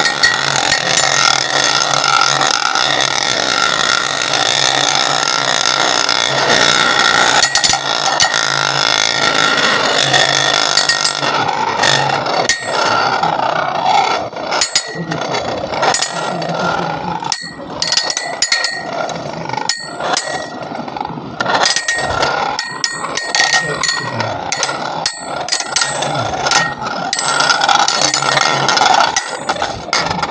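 Two metal spinning battle tops whirring and ringing as they spin together in a ceramic plate. After about ten seconds of steady ringing hum, repeated sharp clacks follow as the tops collide and rattle against the plate.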